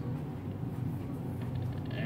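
Dell OptiPlex 390 desktop computer running steadily as it boots into BIOS setup, a low fan hum, with a few faint clicks about one and a half seconds in.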